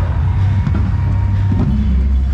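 Drum corps show music playing across the field, picked up on a marcher's head-mounted camera while he runs, with a heavy steady low rumble underneath and some faint drum strokes.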